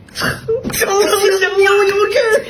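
Speech only: a voice talking, holding one drawn-out note from about half a second in.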